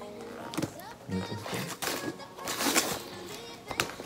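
Wrapping paper rustling and tearing as a small gift-wrapped package is handled and opened, with short noisy crackles toward the end, over background music and a brief murmured voice.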